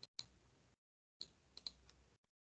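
Faint clicking at a computer, like mouse or keyboard clicks: two clicks near the start and about four more in the second half, each with a little hiss behind it before the sound cuts out again.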